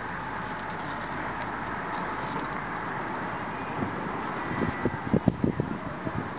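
Cabin noise of a 2007 Toyota Sequoia SR5 driving slowly, heard from inside: the 4.7-litre V8 running with a steady hiss of tyre and road noise. A few short low thumps come near the end.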